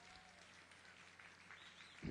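Near silence: faint outdoor ambience with a steady low hum and a few faint high chirps.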